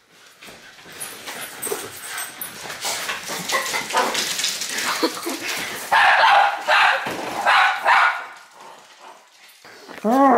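A Boston terrier barking and yipping, with a run of about four short, loud barks in the second half, amid rustling and handling noise on the bed.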